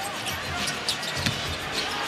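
A basketball being dribbled on a hardwood arena court, a few soft bounces, over the steady background noise of the arena crowd.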